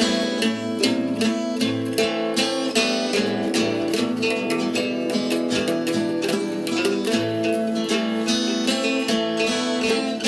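Acoustic guitar strumming chords in a steady rhythm, with a second, smaller stringed instrument playing along; no singing.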